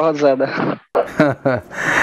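A man laughing, mixed with a few spoken words, with a breathy exhale near the end.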